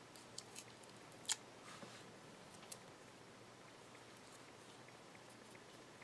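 A few light clicks and taps in the first three seconds, one sharper than the rest about a second in, as a paper-covered flipping photo block is turned over by hand along its freshly cut paper hinges; then near silence.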